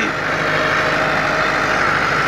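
Massey Ferguson 385 tractor's diesel engine running steadily under load as it drives a rotavator churning through the soil.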